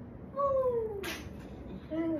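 A small child's drawn-out whiny cry, one call that slides down in pitch over most of a second, with a short, higher sound near the end.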